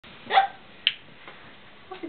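A short, loud call about a third of a second in, then a sharp click about half a second later, from a long-nosed lighter being struck at a candle.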